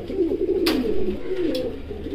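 Domestic fancy pigeons cooing, several low rolling coos overlapping, with a sharp click about two-thirds of a second in.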